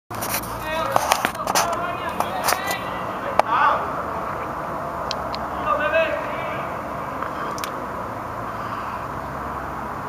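Ballpark ambience: scattered people's voices calling out over a steady outdoor noise, with a few short sharp clicks in the first few seconds and again later.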